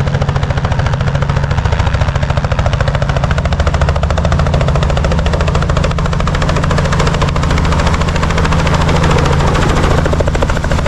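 Small two-bladed helicopter approaching low and descending toward a landing, its rotor beating in a loud, rapid, steady chop over a low engine drone.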